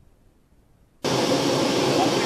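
Near silence, then about a second in a loud, steady rushing jet-aircraft turbine noise starts abruptly and holds.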